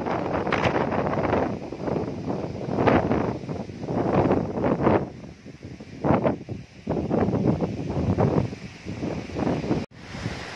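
Strong storm wind blowing in irregular gusts and buffeting the microphone, with the leaves of the trees thrashing. It cuts out briefly near the end.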